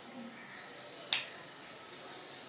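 A single sharp click of chalk tapping against a blackboard, over low steady hiss.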